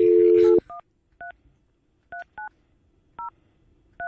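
Telephone dial tone, a steady two-note hum, cut off about half a second in. Touch-tone (DTMF) keypad beeps follow as a number is dialed: six short two-note beeps at uneven spacing.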